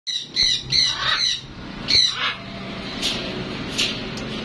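Blue-and-gold macaw squawking in a run of short, harsh calls, loudest in the first second and a half and again about two seconds in, with fainter calls near the end.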